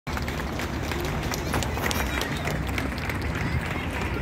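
Outdoor city street ambience: a steady low rumble with scattered faint clicks and faint snatches of distant voices.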